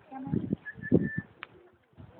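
Birds calling: low cooing pulses, with a few short, high, whistled notes over them.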